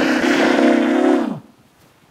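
A man's drawn-out vocal tone, edited and held on one pitch. It wavers slightly, then slides down and fades out about a second and a half in, leaving silence.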